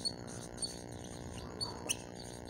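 Whiteboard marker squeaking in short, high chirps as it writes on the board, over a faint steady hum; a sharp click near the end.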